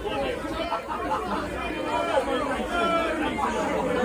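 Background chatter of a crowd: many people talking at once, with no single voice standing out.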